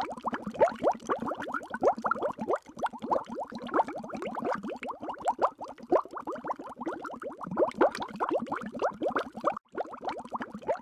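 Bubbling sound effect: a dense, continuous run of quick rising bloops, many each second, with a brief break near the end.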